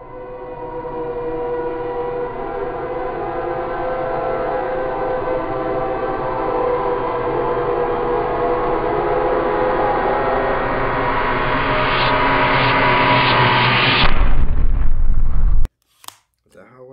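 Droning horror-film soundtrack: a cluster of held, horn-like tones fades in and swells slowly. It rises to a louder, heavier low rumble near the end, then cuts off suddenly.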